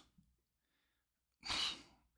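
Near silence, then about one and a half seconds in a man's single short, sharp breath out, lasting about half a second.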